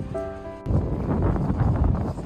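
Background music with held notes. About two-thirds of a second in, it is cut across by a sudden, loud, fluttering rumble of wind on the microphone.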